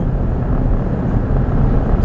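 Steady road noise inside a moving car's cabin in the rain: a low rumble with a hiss of tyres on wet pavement.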